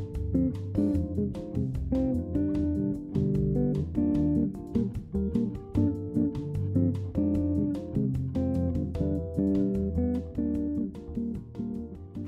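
Background music: plucked guitar with a bass line, playing a light, rhythmic tune.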